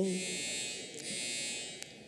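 Sheets of paper rustling close to a desk microphone as they are handled and turned, a hiss in two stretches with a short dip about a second in.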